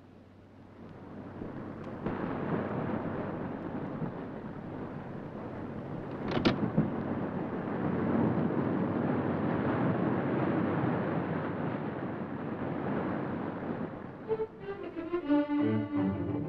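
Sea surf breaking and washing over shore rocks, building in loudness, with a sharper splash about six and a half seconds in. Orchestral strings come in near the end.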